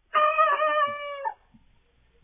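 A young cockerel crowing once: a single pitched crow lasting a little over a second.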